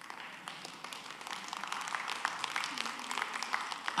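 Audience applauding: a dense patter of many hands clapping that swells slightly toward the end.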